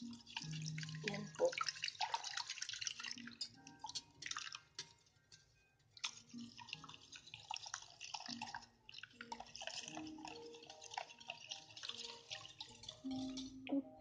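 Dashi stock poured from a saucepan into beaten eggs in a glass bowl while a wire whisk stirs: liquid splashing and the whisk swishing against the glass. It stops briefly about five seconds in, then carries on.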